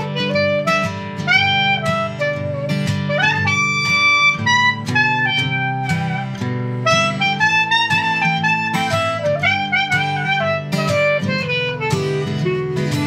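Clarinet playing a solo melody over a strummed acoustic guitar.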